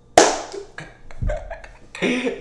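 A single loud, sharp slap of hands just after the start, dying away over about half a second, then a softer low thump just over a second in.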